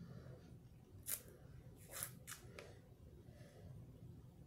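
A few short sips of water through a straw from a plastic tumbler, the loudest about a second in and three more close together about two seconds in, over near-silent room tone.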